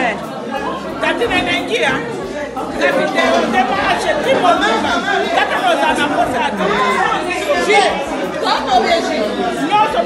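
Several people chatting over one another, with laughter a few seconds in.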